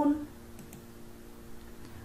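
A few faint computer mouse clicks, about half a second in, over a low steady hum, with the tail of a woman's word at the very start.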